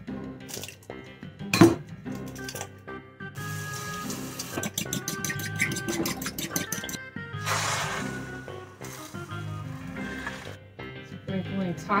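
Eggs cracked on the rim of a ceramic bowl, two sharp knocks about a second apart, then a fork whisking them in the bowl with rapid clinks for a few seconds, followed by a brief hiss as the beaten eggs go into the hot oiled frying pan.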